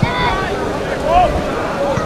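Pitch-side sound of a football match: short shouted calls from players or spectators over a steady background of crowd noise and low rumble.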